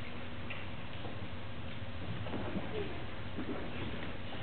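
Quiet hall room tone: a steady low hum and hiss with a few faint light taps and shuffles, the footsteps and movement of a person stepping away from a lectern.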